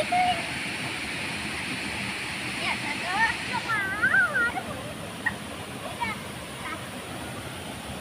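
Waterfall and river water rushing steadily into a pool, with a child's voice calling out briefly about four seconds in.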